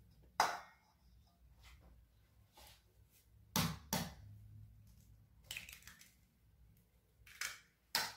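Scattered sharp knocks and clicks, about six of them, from a plastic spoon stirring in a stainless steel mixing bowl and tapping against it. The loudest comes about half a second in, and a close pair follows at about three and a half and four seconds.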